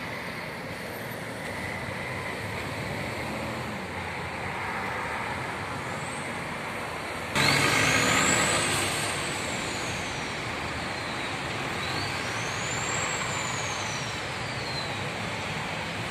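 Steady city road traffic. About seven seconds in it suddenly gets louder, and two high whines rise and fall in pitch one after the other.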